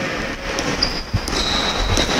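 Basketball dribbled on a hardwood gym floor, a few bounces, with sneakers squeaking and players running, all echoing in the large gym.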